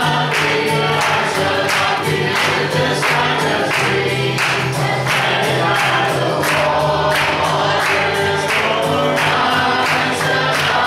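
A man singing a gospel song to his own acoustic guitar, strummed in a steady rhythm.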